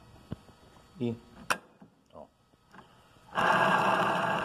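A steel conveyor roller's spring-loaded axle is pressed in by hand, with a sharp click about a second and a half in as it snaps into place. It is followed near the end by a loud, steady rushing noise lasting about a second.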